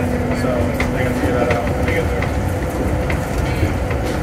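Inside a moving MIA Mover car, a rubber-tyred automated people mover: a steady rumble from the guideway, with a hum that stops about a second in and scattered light clicks.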